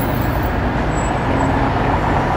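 Steady city street traffic noise: a continuous low rumble of passing vehicles.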